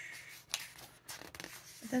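Paper and card being handled: a few short, sharp rustles and ticks as a postcard and snack-box packaging are moved about. A voice begins right at the end.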